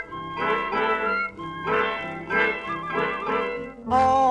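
A 1938 swing dance band recording, playing an instrumental passage without vocals. The band plays short chords in an even rhythm.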